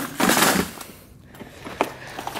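Clear plastic tackle boxes of crankbaits being handled and pulled out of a plastic storage bin: a plastic scraping and rattling at first, then quieter, with a single sharp click near the end.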